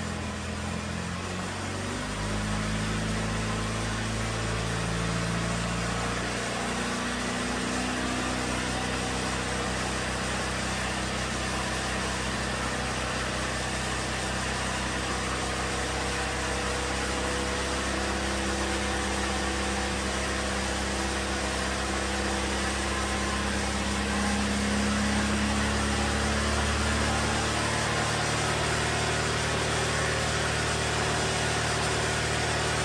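A 2009 Chevrolet Malibu Hybrid's 2.4-litre four-cylinder engine running steadily at fast idle. It picks up slightly about two seconds in and runs a touch louder near the end.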